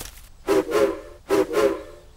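Steam locomotive whistle sounding two toots with a hiss of steam, the first longer than the second.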